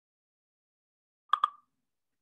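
Two short, sharp clicks about a tenth of a second apart, in otherwise dead silence.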